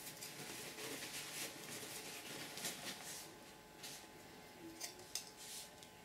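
Faint rustling and brushing of a paper towel and paper being handled, wiping a ruler clean and laying a sheet down, with a few short brushing sounds that are sharpest about four to five seconds in.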